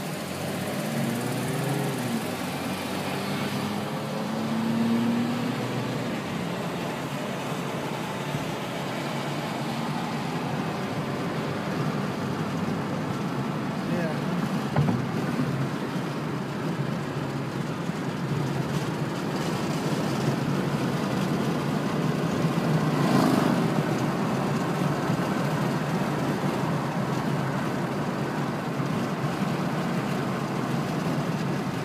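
Road and engine noise inside a moving car's cabin. In the first few seconds the engine pitch rises in a few steps as the car accelerates, then a steady tyre and road rumble continues, with a brief louder swell about two-thirds of the way through.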